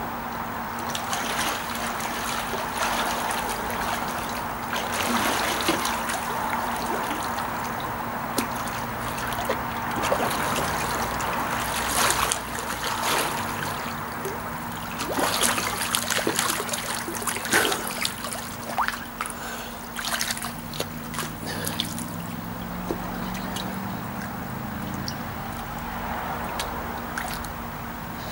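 Pool water sloshing and lapping as a swimmer swims breaststroke, with many short, sharp splashes from the strokes scattered throughout, over a faint steady low hum.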